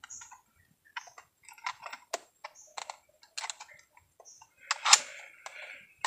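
Scattered small clicks and rattles of a fish lip grip and a digital hanging scale being handled and hooked together to weigh a snakehead, loudest about five seconds in.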